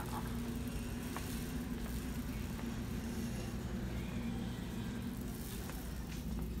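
Steady low electrical hum of a large store's background noise, with a few faint light clicks.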